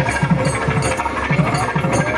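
Procession drumming: quick, uneven drumbeats, several a second, over the hubbub of a large crowd.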